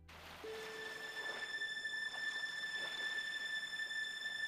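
A steady high-pitched whistling tone over a faint hiss, with a brief lower tone about half a second in.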